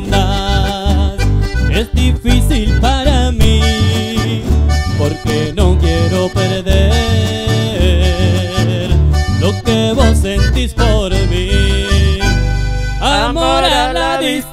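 Live folk music led by a red button accordion, with acoustic guitar and an electric bass keeping a steady beat. A voice comes in singing near the end.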